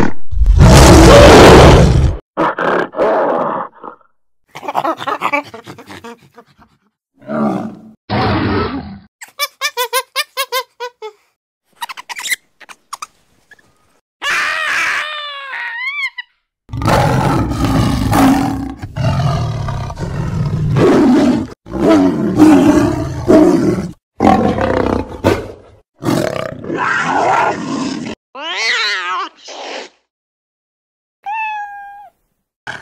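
A string of cartoon animal sound effects cut back to back with silent gaps: a gorilla roaring at the start, short shrill warbling calls in the middle, and a long stretch of loud roaring and snarling from a green ape in the second half.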